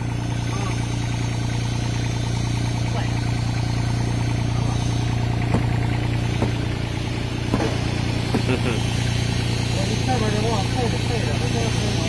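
An engine running at a steady idle, a low even drone, with a few sharp metallic knocks from the track work about halfway through.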